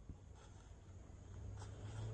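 Faint, soft footsteps on woodland ground: a few light crunches over a low steady hiss.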